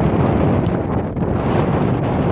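Strong wind buffeting the microphone in a steady rumble, with a single sharp strike of a football being kicked about two-thirds of a second in.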